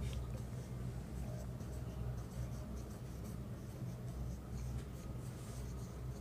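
Marker pen writing on a whiteboard: faint, irregular strokes as a word is written out, over a low steady hum.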